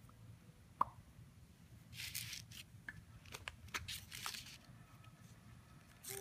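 Hands rubbing and smearing wet finger paint across construction paper: a sharp click about a second in, then several short bursts of scraping and crinkling.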